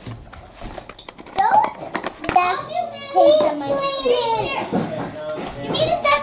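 Young children's voices talking and chattering, high-pitched and not clearly worded, with a few light clicks in the first second or so.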